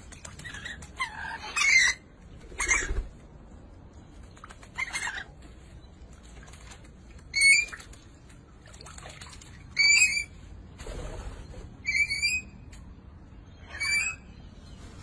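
Budgerigar bathing in a pet water fountain: short chirps roughly every two seconds, with wing-fluttering and splashing in the water.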